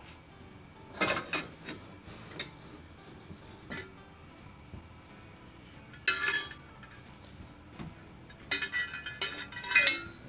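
Metal exhaust pipes knocking and clinking against each other as they are lifted out of a cardboard box: a few separate knocks, one louder one that rings briefly about six seconds in, then a quick run of ringing clinks near the end.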